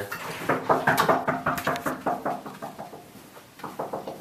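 A quick, irregular run of knocks and rattles, densest over the first two seconds and then fading.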